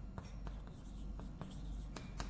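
Chalk writing on a blackboard: a run of light taps and short scratches as each stroke is drawn.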